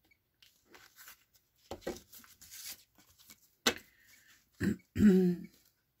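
Tarot cards rustling and clicking as they are picked up from a table and gathered into the deck, in short scattered bursts. About five seconds in comes a throat clearing, the loudest sound.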